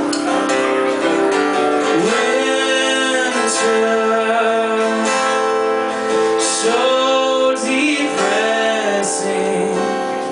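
A man singing live with a strummed acoustic guitar. He holds long notes, several of which bend up into pitch.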